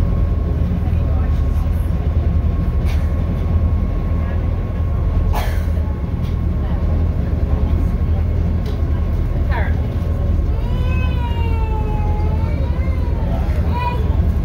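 Tour boat's engine running with a steady low drone, heard aboard. A person's voice comes in briefly near the end.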